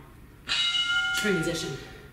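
A single bell-like chime rings out suddenly about half a second in and fades over about a second, the interval timer's signal that the 30-second work period is over. A short vocal sound overlaps its end.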